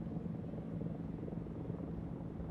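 A steady low mechanical drone with a few faint level tones, like a distant engine.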